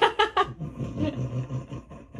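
A young woman laughing hard: a quick run of loud laughs at the start, then fainter sound.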